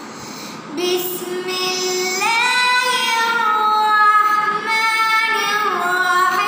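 A young boy's voice reciting the Quran in melodic tilawah style: after a brief pause for breath, the voice comes in about a second in and holds long drawn-out notes with slow slides between pitches.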